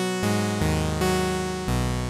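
Arturia Pigments 4 analog-engine synth patch through a Matrix 12 filter model, playing a run of chords that change every half second or so. Each chord opens bright and then closes down as the filter envelope sweeps the cutoff. The envelope's release has been lengthened so each filter sweep lasts longer.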